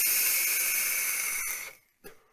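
Steady hiss of a long draw on an Indulgence Mutation MT-RTA vape tank atomizer on a box mod: air rushing through the airflow slots past the firing coil. It fades out shortly before the end.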